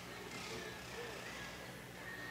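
Faint gymnasium ambience: distant voices from the crowd over a steady low hum.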